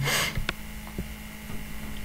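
Steady low electrical hum on the recording, with a short breath-like rush at the start and a couple of faint clicks about half a second and a second in.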